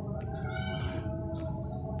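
A marker squeaking on a whiteboard: one short, curving squeak about half a second in, with a few light taps of the pen on the board. A steady tone hums underneath.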